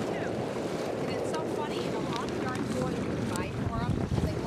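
Wind buffeting the microphone over the wash of lake water, a steady rushing noise, with faint short high calls in the background.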